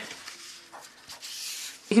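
Soft handling noise of paper and a clear acrylic stamp block: a faint rustle of cardstock being opened and handled, strongest in the second half.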